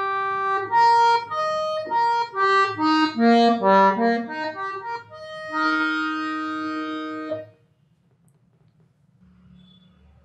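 Bengude hand-pumped harmonium played on its keys, its reeds sounding a short melodic phrase of held notes that runs down and back up. The phrase ends on a long held note that stops about seven and a half seconds in.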